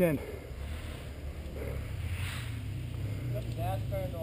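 Dirt bike engine idling, a low steady rumble, with a faint voice near the end.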